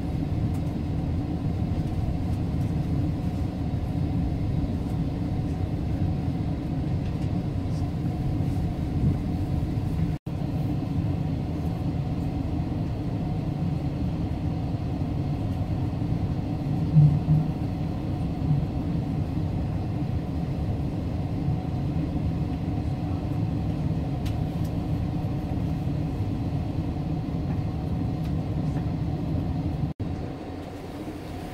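Steady low rumble inside a passenger train car as it rides along the tracks. It drops out for a moment about ten seconds in, and a couple of short louder knocks stand out a little past the middle.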